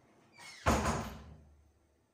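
A single sudden bang just over half a second in, dying away over about a second.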